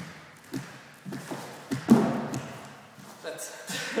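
Thuds of hands and feet striking a wooden dance floor in the bear-dance step of Hallingdal folk dance, about one every half second, with heavier footfalls from a second dancer running in; the loudest thud comes about two seconds in. A voice joins near the end.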